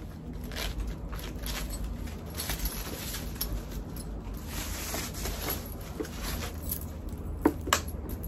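Rustling and crinkling of protective wrapping as a handbag strap is unwrapped by hand, followed near the end by two sharp metallic clicks from the chain strap's hardware.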